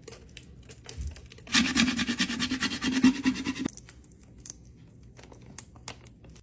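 Transfer tape being rubbed down over a vinyl decal on a plastic tumbler: a dense, scratchy rubbing that starts about a second and a half in and lasts about two seconds, with lighter ticks and rustles of the plastic sheet around it.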